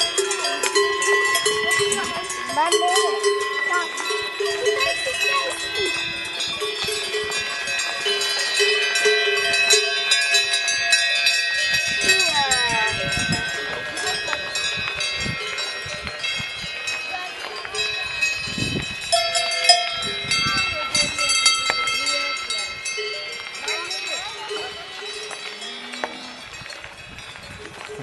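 Many cowbells ringing at once from a grazing herd of cows, their clanking tones overlapping unevenly; the ringing grows fainter over the last few seconds.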